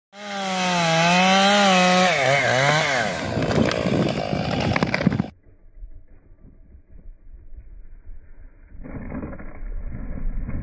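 Stihl 661 two-stroke chainsaw with a 36-inch bar running at full throttle in a large sycamore trunk. Its pitch wavers and dips as it loads in the cut, then gives way to crackling and sharp snaps until the sound cuts off suddenly about five seconds in. Near the end a muffled low rumble comes as the felled tree hits the ground.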